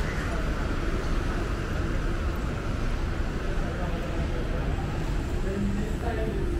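Steady city street ambience: a low rumble of traffic with indistinct voices of people nearby.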